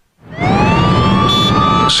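A brief silence, then a siren sound effect that rises in pitch and levels off into a steady wail over a noisy background, with a sharp hit near the end.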